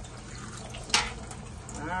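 Kitchen tap running, water pouring through a plastic pot of bark potting medium and splashing into a stainless steel sink as the medium is saturated and left to drain. One sharp click about halfway through.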